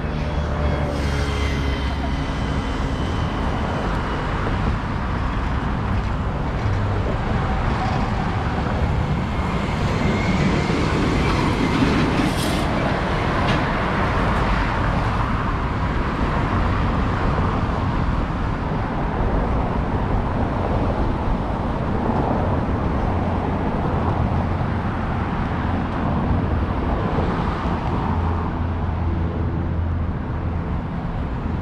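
Steady road traffic from cars passing on a multi-lane city road, swelling for a few seconds near the middle as vehicles go by.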